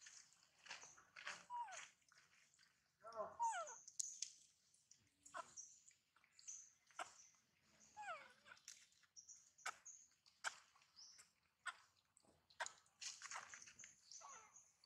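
Baby macaque whimpering: several short, faint cries that fall in pitch, the distress calls of a hungry infant denied milk, with scattered clicks and faint high chirping around them.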